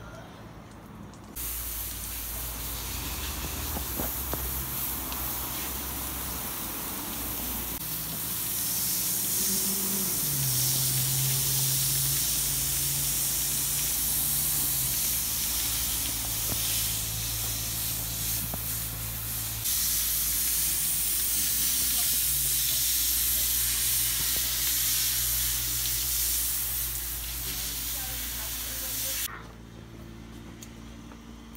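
Garden hose spraying water onto a horse's coat and the wet wash-rack floor: a steady hiss that starts about a second in, gets louder partway through, and cuts off abruptly just before the end.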